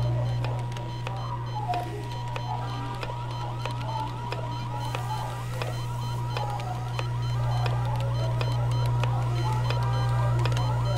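Layered household noises: a loud steady low hum with a thin steady high tone over it. From about two and a half seconds in, rapid repeating electronic chirps join in, several a second.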